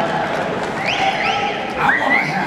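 Arena concert crowd between songs: a steady hum of voices, with rising shouts from the audience about halfway through and again near the end.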